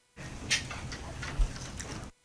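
Rustling room noise that starts suddenly just after the start, with two knocks, about half a second and a second and a half in.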